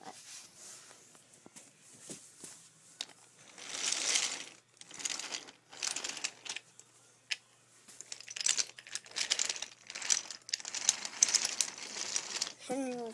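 Rustling, crinkling handling noise in several short bursts, with quiet gaps between them, as a handheld camera is moved about close to the toys.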